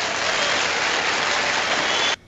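Canned applause sound effect: a recording of a crowd clapping, steady and even throughout, played in to answer the host's own joke.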